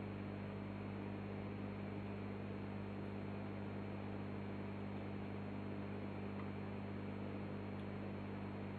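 Steady low mains hum with a faint hiss, from a hand-wound power transformer running under test, loaded by a 20 W halogen bulb on its 6 V heater winding.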